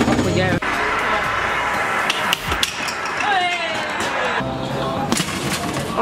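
Amusement arcade noise: electronic game-machine sounds and jingles layered together, with a falling electronic tone and a warbling high tone in the middle. Sharp knocks sound about two and a half seconds in and again about five seconds in.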